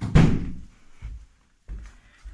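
A wooden interior door thudding shut with a heavy thump that dies away over about half a second, followed by two lighter knocks.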